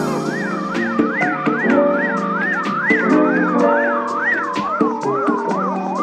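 A wailing siren in a music track, its pitch sweeping up and down about twice a second, layered over held chords and regular drum hits.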